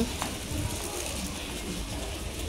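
Shop background: a steady low hum under faint, even noise, with a small click about a quarter second in.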